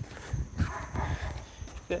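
Low knocks and rubbing from a phone being carried against clothing, with a faint voice in the middle and a spoken "yeah" at the very end.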